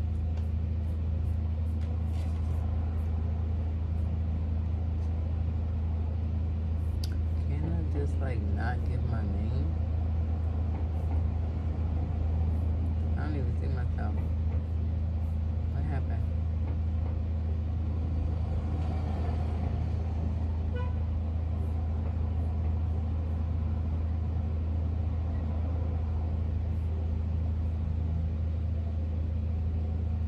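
A steady low mechanical hum, with faint voices and a few light clicks between about 7 and 16 seconds in.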